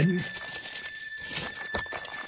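Plastic packaging crinkling and rustling in short, irregular bursts as items are handled.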